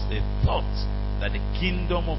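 Steady electrical mains hum, with a single sharp click about half a second in.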